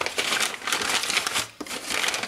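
Packaging crinkling and rustling as it is handled and unwrapped, with a brief lull about one and a half seconds in.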